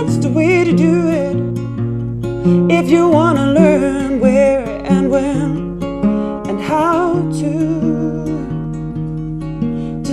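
A woman singing a slow song in English with vibrato, accompanied by acoustic guitar, performed live.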